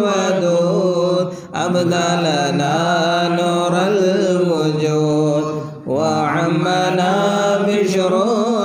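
Voices chanting Arabic Mawlid verses in long, drawn-out melodic lines, with two short breaks for breath, about a second and a half in and near six seconds.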